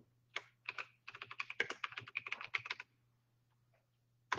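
Typing on a computer keyboard: a few separate key clicks, then a quick run of keystrokes lasting about two seconds, stopping shortly before the end.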